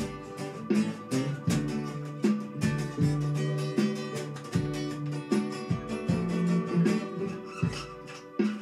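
Two acoustic guitars playing chords together, each chord struck sharply and left ringing, about every three-quarters of a second.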